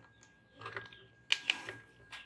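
A few small clicks in quick succession about a second and a half in, from tweezer probes being set on a capacitor on a circuit board and the test button of a handheld BSIDE ESR02 Pro component tester being pressed.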